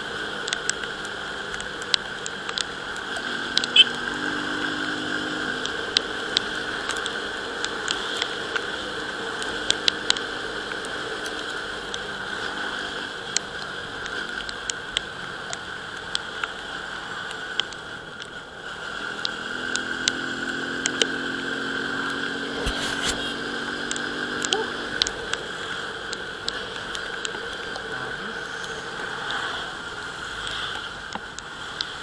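Euro Keeway Rapido 110's small single-cylinder engine running under way in the rain, heard under steady wind and wet-road noise. The engine note comes up stronger in two stretches, a few seconds in and again about two-thirds of the way through, and frequent sharp ticks run throughout, fitting raindrops striking the camera.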